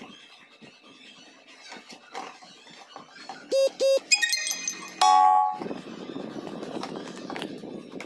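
Faint knocks from handling a plastic stacked food carrier. About three and a half seconds in come two short, loud beeps, then a warbling high tone and a longer loud tone around five seconds in. After that a steady low noise runs on.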